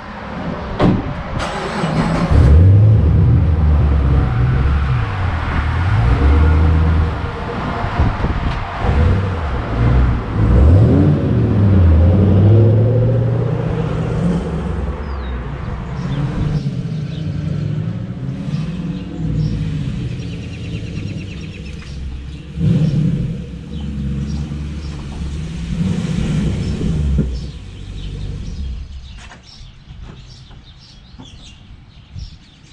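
A car engine starts about two seconds in and runs loudly, with the pitch rising and falling as it revs and drives off. In the second half it keeps running at a lower, more even level.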